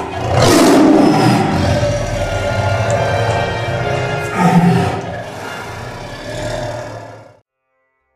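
A tiger roaring over theme music: a loud roar at the start and a second one about four and a half seconds in, with the music fading out about seven seconds in.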